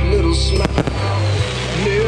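Consumer fireworks going off: a quick cluster of sharp bangs a little over half a second in, heard under a song that plays throughout.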